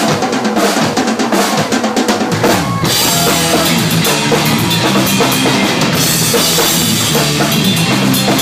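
Live rock band playing loudly: a drum kit plays an opening run of hits on the drums for about three seconds, then the rest of the band comes in with a steady driving beat and ringing cymbals.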